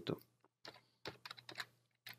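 Computer keyboard typing: a scattering of quick, faint keystroke clicks as a line of code is finished.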